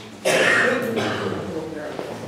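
A man coughing and clearing his throat close to a table microphone: one sudden loud burst about a quarter second in, trailing off over the next second.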